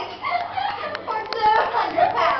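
A few sharp hand claps amid girls' voices.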